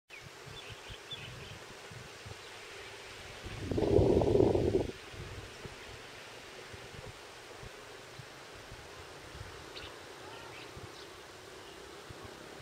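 Faint steady outdoor ambience with a few faint high chirps, broken about three and a half seconds in by a loud low rumble that lasts about a second and a half and then stops suddenly.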